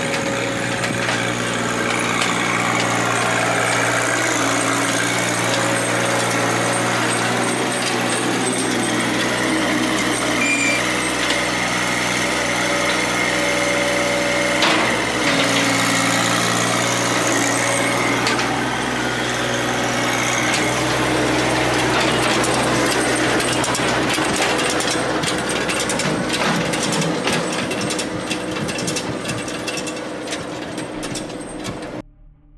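Compact loader tractor's engine running steadily under work, its pitch shifting a few times as it drives and works the loader.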